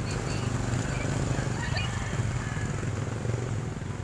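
A steady low rumble of an engine running, with faint voices in the background.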